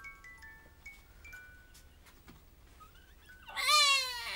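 A baby gives one short, loud, high squeal near the end, its pitch falling slightly. Under it plays a soft tinkling toy melody of single chiming notes.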